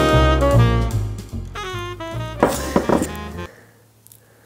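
Background music, a held melody over a steady bass line, that fades and stops about three and a half seconds in.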